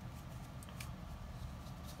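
Faint handling of paper trading cards: a few soft, short clicks over a low steady room hum.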